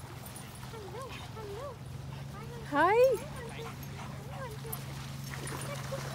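A dog whining in a series of short rising-and-falling whimpers, with one louder yelping whine about three seconds in.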